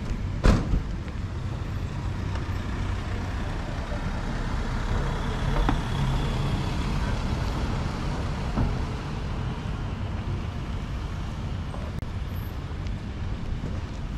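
Street traffic: a steady low rumble of motor vehicles that swells for a few seconds in the middle as a vehicle passes close. A single sharp knock just after the start is the loudest sound.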